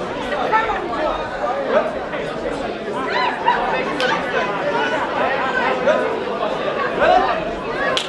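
A crowd of spectators chattering in a large hall, a steady babble of many overlapping voices with no single voice standing out. There is one sharp click about halfway through.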